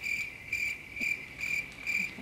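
Cricket chirping sound effect: a steady high chirp pulsing about four times a second, the comic 'crickets' cue for an awkward pause.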